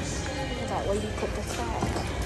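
Background music and indistinct voices over a steady store hubbub, with a few brief gliding sung or voiced notes about a second in.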